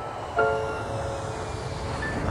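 Soft piano music: a chord struck about half a second in and left to ring, over a low, steady background rumble.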